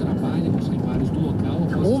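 Steady engine and road noise of a car driving along a street, a constant low rumble.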